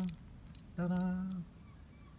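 A man's voice sings a drawn-out "ta-da", each syllable held on one flat note, with a faint click or two between them.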